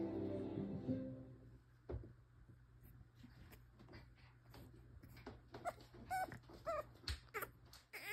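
Frenchton puppy whimpering and yipping: a quick run of about seven short, high-pitched calls in the second half.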